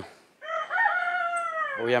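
Rooster crowing once: a single long crow of well over a second, starting about half a second in.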